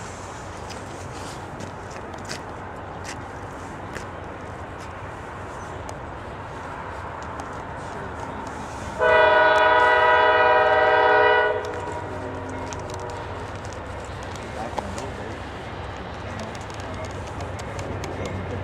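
Freight locomotive's K5LA five-chime air horn sounding one long blast of about two and a half seconds, some nine seconds in, over the steady rumble of GE CW44AC diesel locomotives pulling a freight train at slow speed.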